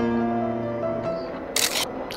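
Soft background music of held notes, which fades out about a second in, followed near the end by a short, loud camera shutter click.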